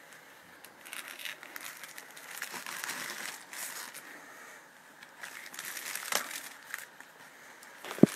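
Plastic bubble mailer crinkling as hands handle it and work it open, in two stretches of irregular crackling with a short lull between them and a sharp click about six seconds in.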